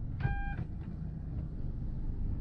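A single short electronic beep from a 2014 Hyundai Sonata (YF), the chime for reverse gear being selected. It sounds over the low, steady hum of the car's running engine.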